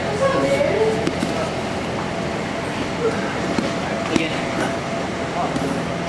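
Faint, indistinct voices over steady room noise.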